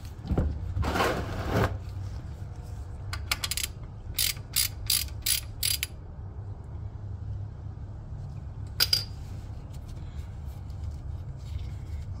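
3/8-inch ratchet clicking in short runs as it backs a freshly broken-loose plug out of a Ford Mustang's rear differential housing. A brief rasp comes about a second in, then clusters of sharp pawl clicks with the swing-back strokes, and a last single click near the end.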